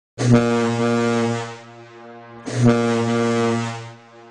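A deep horn tone, sounded twice as an intro sting over a logo. Each blast starts sharply, holds for about a second and then fades. The second blast comes about two and a half seconds in.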